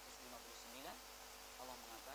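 Faint, muffled male voice speaking in short phrases over a steady background hiss.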